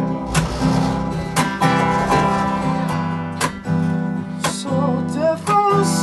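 Acoustic guitar strummed in full chords, about one strong stroke a second, with the chords ringing on between strokes. A man's singing voice comes in near the end.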